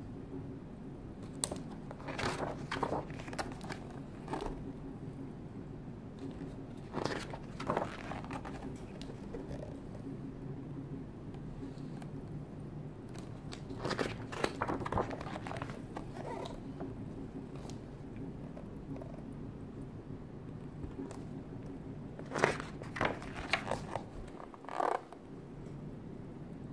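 Glossy pages of a large hardcover art book being turned by hand: paper rustling and crackling in four short bursts, over a steady low hum.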